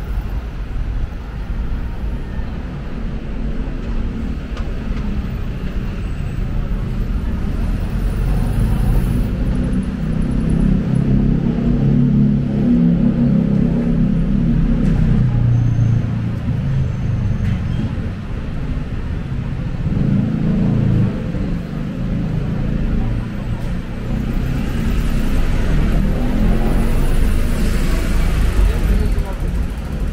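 Busy city street ambience: road traffic rumbling past with indistinct voices of passers-by, under a constant deep rumble. The rumble swells twice, about a third of the way in and again in the last third.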